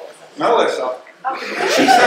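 A person talking with chuckling laughter mixed in.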